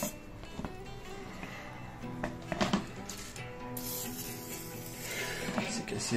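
Background acoustic guitar music with steady held notes, over a few short hisses of an aerosol lubricant spray can.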